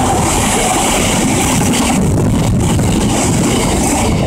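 Freight train cement tank wagons rolling past at speed: a loud, steady rumble and rush of steel wheels on rail, with faint clicks.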